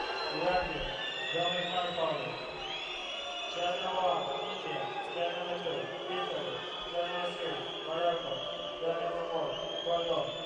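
Indistinct voices echoing in a large indoor arena hall, with no clear words.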